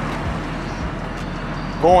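Steady background noise of road traffic, an even hiss.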